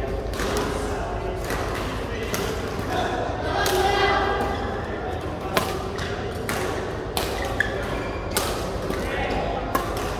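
Badminton rackets striking a shuttlecock during a doubles rally: sharp, short hits at irregular intervals, over background voices.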